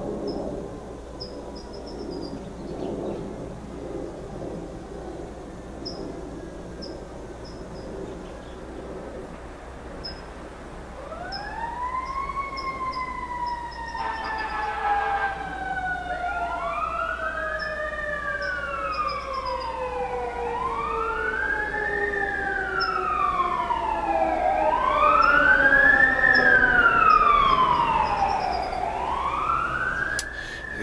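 Emergency vehicle siren wailing, its pitch rising and falling about every four seconds. It comes in about eleven seconds in and grows steadily louder, loudest near the end.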